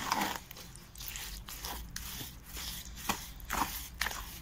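Stiff, wet cement mortar made with fine marble grit being stirred by hand in a plastic bucket: irregular wet, gritty scraping and squelching strokes.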